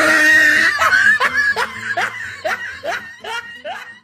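Human laughter sound effect dubbed over the video: a loud outburst, then a run of short "ha" bursts about two or three a second that grow quieter toward the end.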